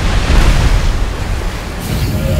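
Film sound effect of a massive torrent of floodwater rushing and crashing down, a loud rumbling wash of noise heavy in the low end.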